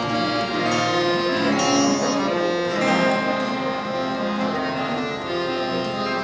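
Ghazal accompaniment played without singing: harmonium notes held under a melody on a plucked string instrument.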